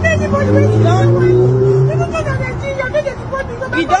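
A woman's voice pleading in distress over street noise, with a steady low vehicle hum in the first two seconds.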